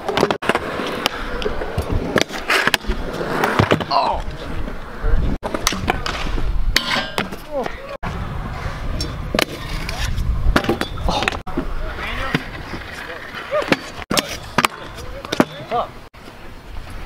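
Stunt scooter wheels rolling on concrete, with sharp clacks and knocks as the scooters pop, land and strike the ledge and metal rail. The sound breaks off abruptly several times where short clips are cut together.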